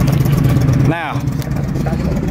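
A vehicle engine idling with a steady low hum, which drops away about a second in.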